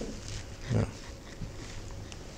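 Quiet lecture-hall room tone, broken once a little under a second in by a man's short spoken 'yeah', with a few faint rustles.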